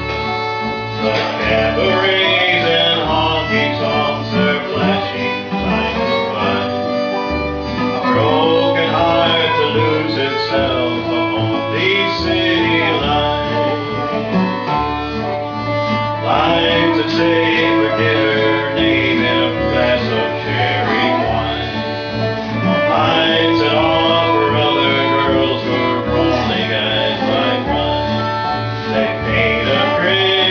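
Live acoustic country-bluegrass band playing steadily: fiddle and dobro lines over acoustic guitar strumming and upright bass.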